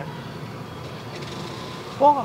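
Steady outdoor background noise with a faint hum.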